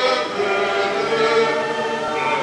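A choir of voices singing, holding long sustained notes that shift in pitch.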